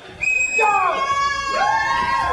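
Several high-pitched voices screaming and shrieking at once, starting suddenly just after the start and held, with some cries bending up and down in pitch.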